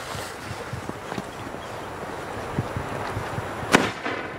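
Burning fuse of a single-shot firework shell in a ground tube, with a steady hiss, then one sharp bang near the end as the lift charge fires the shell out of the tube.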